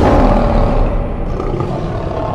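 A lion roar sound effect in a channel logo sting: one long, loud roar that slowly fades.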